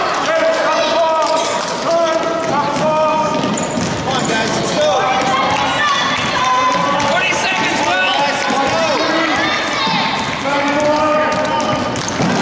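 Basketball dribbled on a hardwood gym floor under overlapping shouting and chatter from players and spectators.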